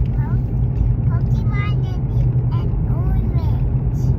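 Steady low road and engine rumble inside a moving car's cabin, with a young child's voice faint over it in short bits.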